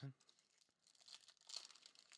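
A foil trading-card pack being torn open and crinkled in the hands: faint, scratchy crackling, busiest around the middle.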